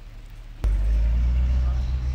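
Chevrolet C8 Corvette's V8 engine running with a loud, steady low rumble that comes in suddenly about half a second in.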